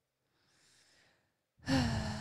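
A person sighing close to a microphone: a faint breath about a third of a second in, then a louder sigh starting near the end.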